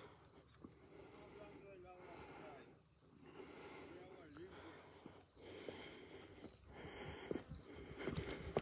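Quiet rural outdoor ambience: a faint, steady, high insect drone, with faint distant voices.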